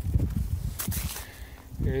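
Footsteps on a wood-chip and manure compost pile, with an irregular low rumble on the microphone as the camera is carried up to the thermometer, and a sharp crunch about a second in.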